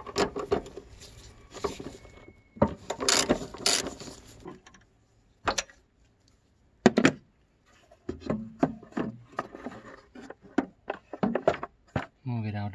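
Hand-tool and plastic handling noise: a socket driver backing out a screw and the plastic air filter housing being worked loose, as irregular clicks, scrapes and knocks. There is a burst of rasping about three seconds in and a run of quick knocks in the second half.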